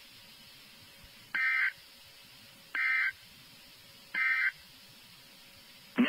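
NOAA Weather Radio SAME end-of-message signal: three short bursts of digital data tones, each about a third of a second long and about 1.4 seconds apart, marking the end of the severe thunderstorm watch alert.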